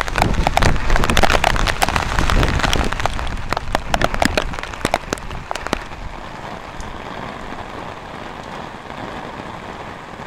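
Heavy rain drumming on an umbrella close overhead, many separate drop hits over a steady downpour. About six seconds in, it drops to a quieter, even hiss of heavy rain.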